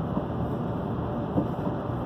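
Steady road and tyre noise with engine hum, heard inside a car's cabin at highway speed.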